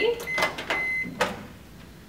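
Haier 900-watt countertop microwave oven giving one steady, high beep about a second long, mixed with sharp clicks. Another click comes near the middle, as the door latch is released and the door is opened.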